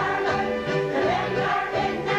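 Music with a steady, rhythmic bass line and a group of voices singing along together.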